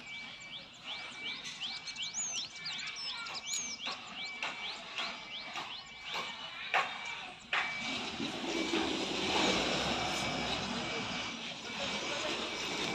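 Outdoor ambience of birds chirping in quick rising calls, with a few sharp knocks. From about halfway a steady rushing noise rises and stays, covering the birds.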